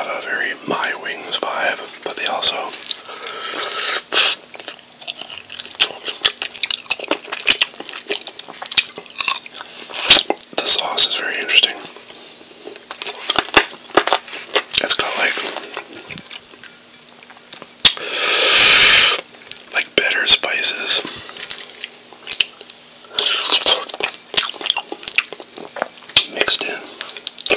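Close-miked chewing and wet mouth sounds of eating sauce-covered buffalo chicken wings: irregular smacks and sticky clicks, with a loud breathy rush lasting about a second a little past the middle. A faint steady hum runs beneath.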